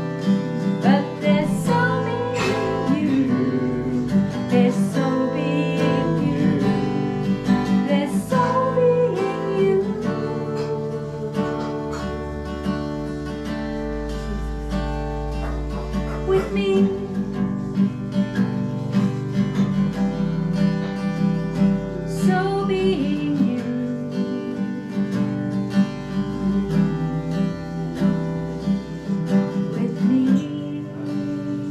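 Acoustic guitar strummed in steady chords, with a woman singing a slow worship song over it.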